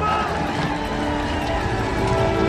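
A man yelling a battle cry over the noise of a crowd of shouting soldiers.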